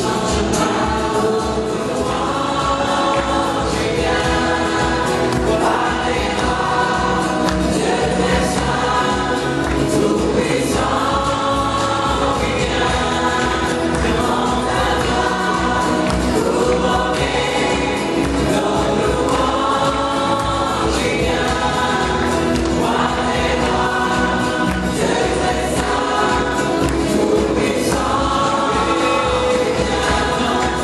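Live gospel choir singing in phrases about two seconds long, with instrumental accompaniment keeping a steady beat.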